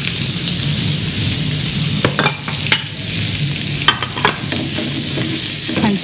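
Sliced onion rings sizzling in oil on a hot flat griddle, a steady high hiss, with a few sharp clicks about two to four seconds in.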